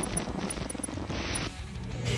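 Tail of a channel intro sting: quiet glitchy electronic music with a few small high clicks, dropping away about three-quarters of the way through.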